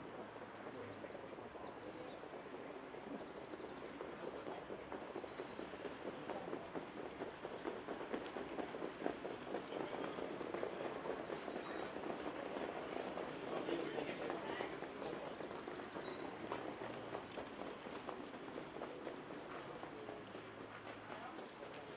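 Hoofbeats of several harness trotters pulling sulkies over a sand track, a dense patter that grows louder in the middle as the horses pass close and then fades.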